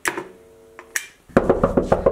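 A sharp click, then from about a second and a half in a quick run of clicks and rattles: a flat's front door lock and latch being worked.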